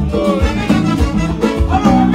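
A compas band playing live: an electric guitar lead with a wavering melody over drum kit and bass.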